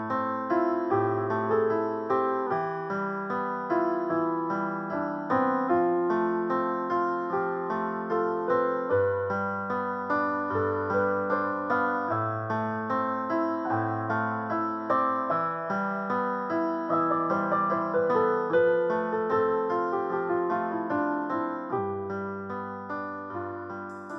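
Background piano music: a steady flow of gently picked piano notes over low held bass notes, fading slowly near the end.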